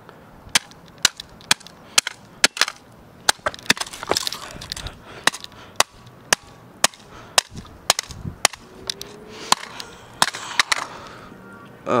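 A rock striking a Casio fx-7700GE graphing calculator over and over, sharp cracks at about two a second.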